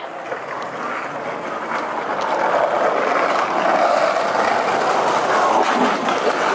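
Steady noise of a passing vehicle on a city street, growing louder over the first three seconds and then holding.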